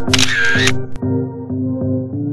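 Background music with a regular beat. Near the start a camera shutter sound effect cuts across it for about half a second.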